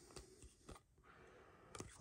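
Near silence, with a few faint light clicks and ticks of trading cards being handled and flipped through in the hands.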